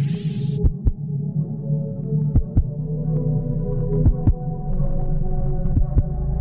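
Heartbeat sound effect: slow paired thumps about every 1.7 s over a steady low drone, with a short hiss at the very start.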